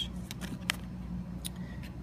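Tarot cards being handled: a few short clicks and taps as cards are picked up and moved over one another, the sharpest about a third of the way in, over a steady low hum.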